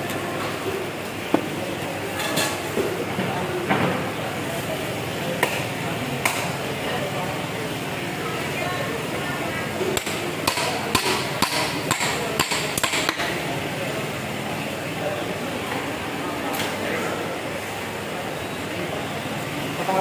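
A large heavy knife chopping fish on a thick wooden chopping block: single strikes now and then, and a quick run of several blows around the middle.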